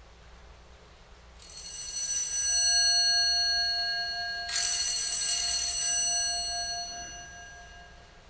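A bell ringing twice, about three seconds apart: the first ring swells in and the second starts sharply, each with clear high ringing tones that linger and fade away.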